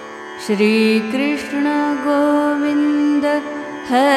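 A woman singing a slow devotional chant melody over a sustained harmonium and tanpura drone. Her voice enters about half a second in, holds long notes, and starts a new wavering, ornamented phrase near the end.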